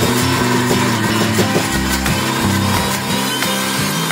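Electric mixer grinder (Indian mixie) running steadily, grinding urad dal into a fine paste in its stainless-steel jar, with background music over it.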